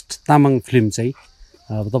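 Steady, high insect chirring in the background under a man's speech, which is the loudest sound.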